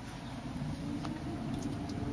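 Vehicle engine running, heard from inside the cab while driving slowly on a gravel road, its note rising gently as the vehicle picks up speed. A couple of light ticks come about a second in and near the end.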